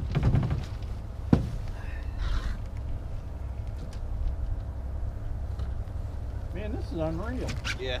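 Steady low wind rumble in an open fishing boat, with one sharp knock about a second in and a man's voice near the end.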